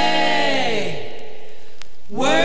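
Late-1950s jazz vocal-and-trombone ensemble record playing: a held chord of several voices or horns slides downward in pitch over about a second and then dies away.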